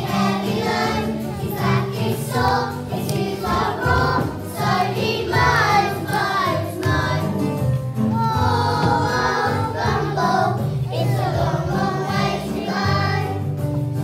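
A group of young children singing a song together over instrumental accompaniment.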